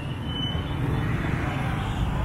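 Motorbike traffic passing close on a city street: a steady engine rumble with road noise.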